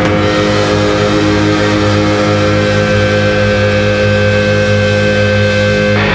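Live hard rock band holding one sustained, distorted electric guitar chord that rings on steadily, with bass underneath.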